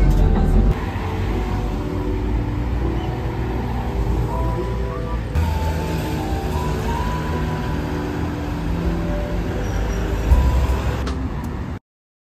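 Background music with held melodic notes plays over the low rumble of a city bus in motion. All sound cuts off suddenly shortly before the end.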